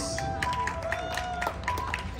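Live band vamping softly: a few held notes with light, regular ticks about four a second.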